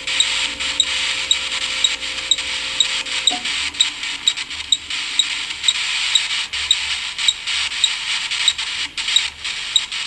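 Scattered small pops and clicks over a steady hiss, with a faint regular ticking; a low hum stops about three seconds in.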